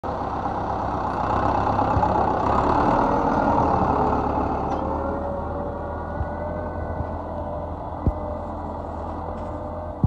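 John Deere 720 tractor's diesel engine running steadily under load as it pulls a tine cultivator, loudest in the first few seconds. A few sharp knocks come around six to eight seconds in.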